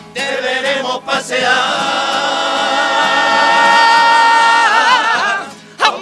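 A chirigota, a carnival group of men, singing a pasodoble together. They hold a long, loud note that starts to waver near the end and then breaks off.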